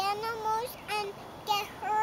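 A young girl singing a wordless sing-song tune in a high voice: one long held note, then short notes about every half second.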